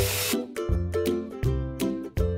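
Background instrumental music with a steady beat. The hiss of vegetables being stir-fried in a pan cuts off suddenly a moment in, leaving only the music.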